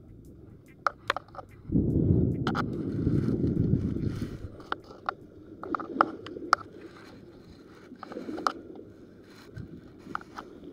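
Handling noise close to the microphone: scattered clicks and knocks, with a louder low rumbling stretch from about two to four seconds in.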